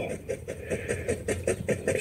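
A man's voice, low and broken, in a pause between spoken sentences, over a faint steady background hiss.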